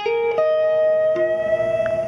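Guitar playing a short phrase from a minor blues solo: three single notes picked one after another, a higher one about half a second in and a lower one a little after a second, each left ringing under the next.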